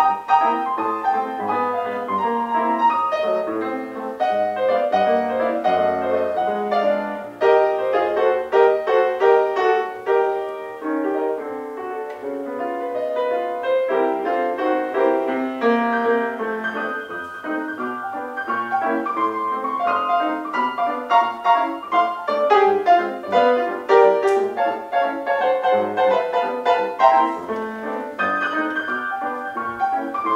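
Acoustic piano taking a solo in a traditional New Orleans-style jazz band, a busy run of notes with low bass notes underneath.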